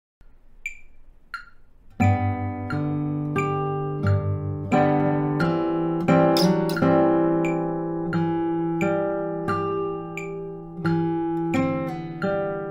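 Nylon-string classical guitar played fingerstyle at a slow tempo: plucked bass notes, melody notes and chords, each left to ring. Two faint sharp ticks about 0.7 s apart come before the guitar starts about two seconds in, and similar ticks keep time through the playing.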